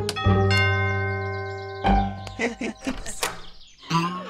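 Cartoon doorbell giving a two-note ding-dong chime that rings out for about a second and a half, followed by a thud and a few short knocks as the door is opened.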